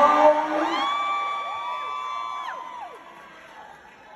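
Audience cheering and whooping, with two long held 'woo' calls that rise, hold and break off about two and a half to three seconds in, over the tail of fading music; the noise then dies down.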